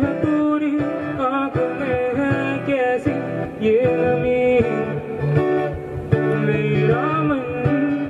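A man singing a Hindi song into a microphone over guitar accompaniment, amplified through stage loudspeakers. The voice holds and slides between notes over steady strummed chords.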